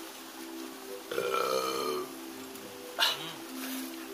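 A person's loud, drawn-out burp lasting about a second, starting about a second in, over steady background music. A short sharp burst of sound comes about three seconds in.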